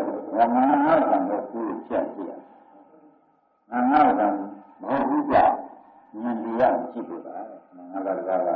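A man's voice giving a Burmese sermon on a 1960 recording, with a short pause a little before the middle.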